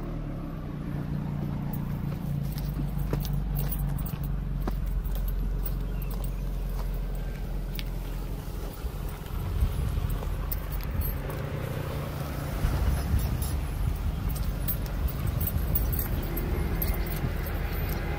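Nissan March hatchback's small petrol engine running at low speed as the car drives through tall grass, its note swelling unevenly in the second half.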